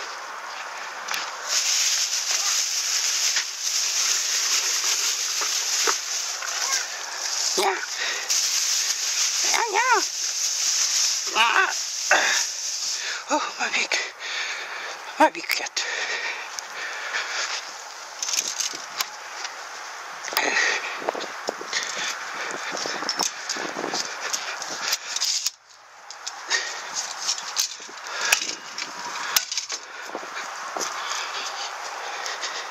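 Metal fan-shaped leaf rake scraping over bare soil and dead grass in repeated uneven strokes, with leaves and debris rustling. A few short wavering voice-like sounds come about a third of the way in, and there is a brief lull near the end.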